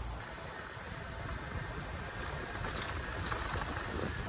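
Steady rush of tyre and wind noise from a bicycle rolling along a paved path.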